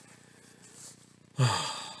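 A man's long, heavy sigh about one and a half seconds in: a breathy exhale with a voiced start that falls in pitch and fades out. It is a sigh of weariness at a run of hard words.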